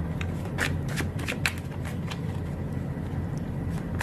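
Tarot cards being handled and shuffled: a run of crisp card flicks and snaps in the first second and a half, then only a few, over a steady low hum.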